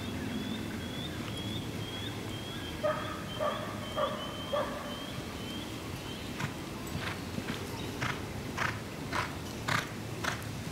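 Birds calling: a high chirp repeating about twice a second through the first six seconds, with a run of four harsher calls around the middle. In the later part come regular hoofbeats about twice a second from a horse loping on arena sand.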